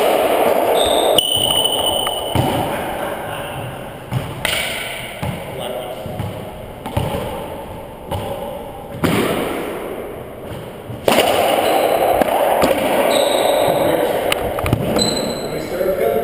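Racquetball being played in an enclosed court: sharp hits of the ball off racquets, walls and the hardwood floor, repeated irregularly, each ringing with the court's echo.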